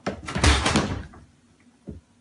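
Wooden kitchen cabinet door swinging shut with a loud clattering bang as a cat leaps off its top edge, followed by a single short knock near the end.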